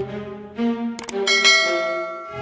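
Subscribe-button sound effects: sharp mouse-click sounds, then a bell chime about a second and a half in that rings out and slowly fades, while the background music drops away.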